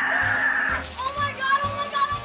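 Children shrieking and shouting with excitement as they open Christmas presents, over background music.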